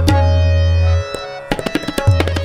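Tabla solo over a harmonium holding a steady melodic line. A deep bass stroke on the bayan rings for about a second, then there is a brief lull. Rapid strokes on the pair of drums resume about halfway through.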